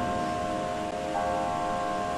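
Soft background music of sustained, chime-like tones, with a new note coming in about a second in.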